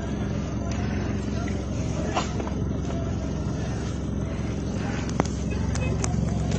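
Steady low hum of a stopped car's idling engine heard inside the cabin, with a single sharp click about five seconds in.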